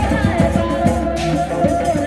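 Live Sundanese reak music: a woman sings through a microphone over a traditional ensemble of drums, with quick, steady drum strokes throughout.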